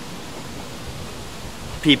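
A steady, even hiss of outdoor background noise in a pause between words; a man's voice starts again near the end.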